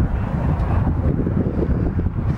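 Wind buffeting the microphone: a loud, uneven low rumble with no distinct pitch.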